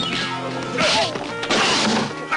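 Film fight-scene sound effects: dubbed punch and crash impacts, two hits about a second in and near the end, over background film music.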